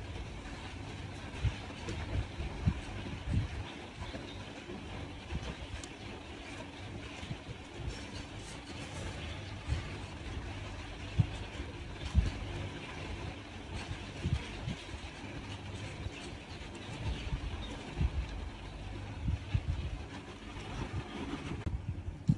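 Handling noise from crocheting yarn with a metal hook: a low rumble with irregular soft knocks and faint rustles as the hands work the stitches.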